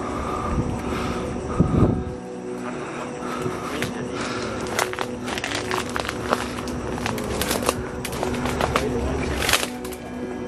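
Background music with low sustained drone tones, over crackling, snapping and rustling of twigs, leaves and branches as someone pushes on foot through dense undergrowth. There is a louder thump about two seconds in and a louder swish of brush near the end.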